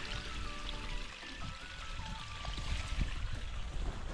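A small mountain spring trickling out of the rocks, heard under background music that moves in held, stepping notes.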